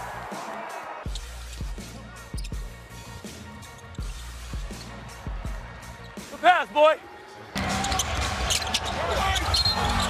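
A basketball being dribbled on a hardwood court, a string of short thuds. About two-thirds of the way in come two loud, high sneaker squeaks, and then the crowd noise in the arena grows louder for the last couple of seconds.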